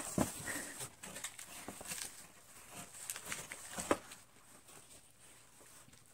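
A cardboard gift box being handled and put down: scattered light clicks and taps, with one sharper knock about four seconds in.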